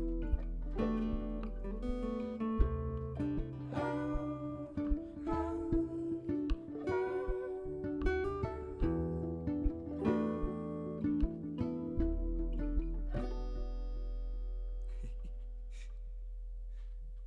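Instrumental passage of a live acoustic folk band: acoustic guitar picking over upright bass notes. About thirteen seconds in the playing stops on a held chord that rings out and slowly fades.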